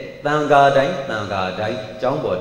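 A Buddhist monk's voice reciting in a chant-like, intoned cadence, a passage of the sermon delivered like a mantra rather than plain speech.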